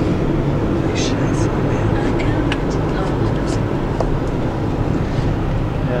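Hyundai Accent's engine and tyre noise heard from inside the cabin, a steady low drone as the car climbs a steep mountain road under load, with a few faint ticks.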